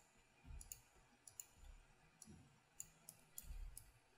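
Faint computer mouse clicks, several scattered through the few seconds, as points are picked in a 3D modelling program.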